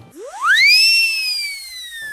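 A whistle-like comic sound effect: one clear tone that sweeps quickly up, peaks about a second in, then slides slowly down.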